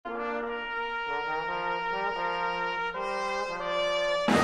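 Brass instruments playing a phrase of held chords that move to a new chord every half second to a second.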